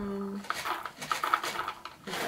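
Hard wax beads poured from a pouch into a wax warmer's silicone bowl: a run of small, irregular clicks and rattles.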